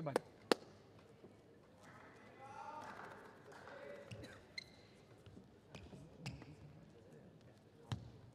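Sparse sharp knocks and taps on a badminton court in a large hall, the loudest about half a second in, with a short high squeak about halfway through. A brief voice calls out between them.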